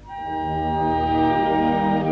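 Orchestra playing sustained chords: after a brief dip, a new chord comes in and swells to a steady level.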